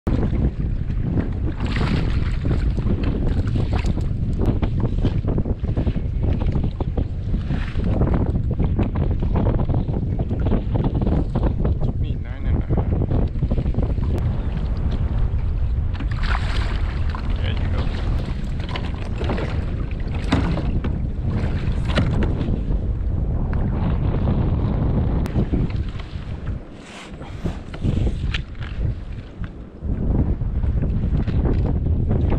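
Wind buffeting the camera microphone in a heavy, steady low rumble, with scattered sharper noises over it. The wind noise drops away near the end, then comes back.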